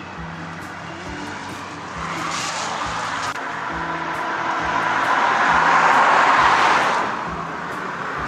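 A car passing on a wet road: tyre hiss swells over several seconds, loudest about six seconds in, then fades. Soft background music plays underneath.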